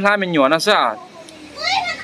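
Speech: a man talking during a phone video call for about the first second, then a short pause and a brief high-pitched voice near the end.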